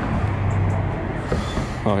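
A motor vehicle's engine hums low and steady, loudest in the first second, over general outdoor traffic noise.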